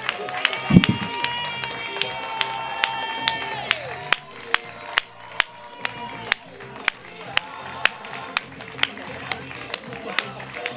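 Steady rhythmic hand clapping close to the microphone, about two claps a second, with a crowd clapping along. Voices hold long notes over the first four seconds, and a dull thump sounds just under a second in.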